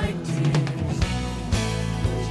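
A live worship band playing, with electric guitar, bass and drum kit, kick-drum hits landing about every half second in the second half and little singing between sung lines.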